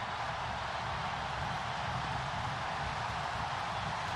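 Large stadium crowd cheering in a steady, sustained roar, celebrating a last-minute winning goal.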